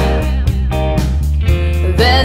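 Rock band playing an instrumental stretch between sung lines: electric guitar over steady bass and drums.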